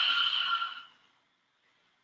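A woman's long sighing exhale out through the mouth, done deliberately as a yoga breathing exercise. It is a breathy whoosh without voice that fades out about a second in.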